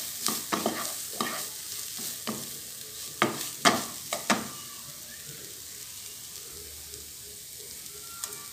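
Minced meat and diced onion frying in a non-stick pan, a wooden spatula scraping and tapping through the mixture in a run of strokes, the loudest a little past the middle. After that the stirring stops and only a steady frying sizzle is left.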